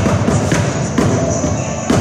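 Bucket drums (upturned plastic buckets) struck with sticks in a steady beat, about two hits a second, over a backing track of a chorus singing a rock-and-roll song.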